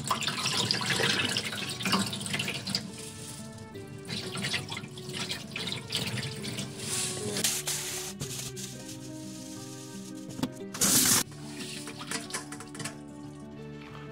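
Water swishing in a steel bowl as black urad dal is rinsed by hand in a sink, with a tap running into the bowl and a short loud rush of noise about eleven seconds in. Background music plays throughout.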